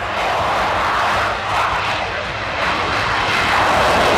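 A Sukhoi Su-57 fighter's twin jet engines at high thrust during takeoff and climb-out: a steady rushing noise that swells near the end.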